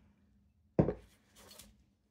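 A glass jar of water set down on a wooden tabletop: one solid knock a little under a second in, followed by a faint, brief rustle.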